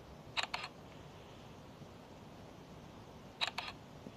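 Two quick clusters of sharp clicks, three in each: one about half a second in and another near the end, over a faint steady hiss.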